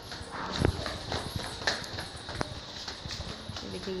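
Footsteps hurrying down a flight of stairs: a quick, uneven series of knocks, the loudest about two-thirds of a second in.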